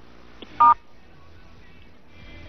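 A single short two-pitch telephone touch-tone beep over a phone line as the call is connected, about half a second in, with a faint steady line background around it.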